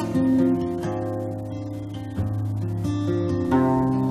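Acoustic guitar playing strummed chords, a few strokes each left to ring.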